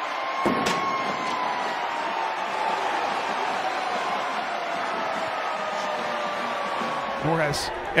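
Stadium crowd cheering after a touchdown, a steady noise of many voices, with a sharp click about half a second in.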